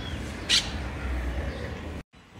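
Outdoor ambience: a steady low rumble, with a faint brief chirp at the start and one short, sharp high-pitched sound about half a second in.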